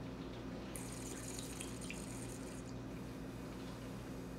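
Wine being drawn through the mouth with air while tasting: a hissing, liquid sound lasting about two seconds, starting just under a second in, with a few faint clicks, over a steady low room hum.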